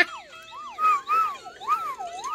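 Slide whistles played in repeated swoops, gliding up and down in pitch about two or three times a second, at times two whistles sliding at once.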